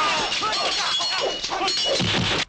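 Many fighters' short battle shouts and yells overlapping, over a continuous din of blows and clashing weapons: the sound of a crowded kung fu melee.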